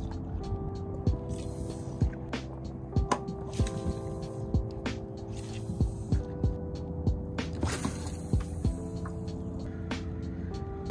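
Background music: sustained chords that change every second or two, over a light beat.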